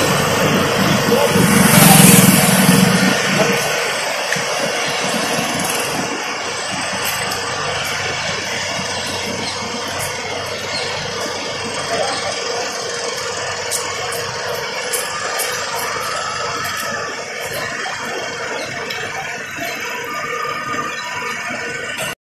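A motor vehicle's engine passing close, loudest about two seconds in, followed by a steady background of outdoor traffic noise.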